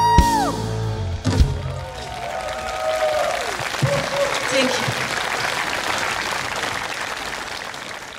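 A live rock band's closing bars: a last held sung note and a final hit from drums and band about a second and a half in, then an audience applauding with shouts and whoops, fading out near the end.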